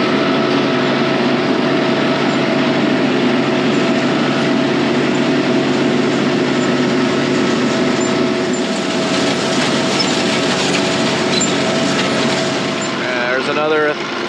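Compact tractor engine running steadily while pulling a seeder that is planting wheat. A man's voice starts near the end.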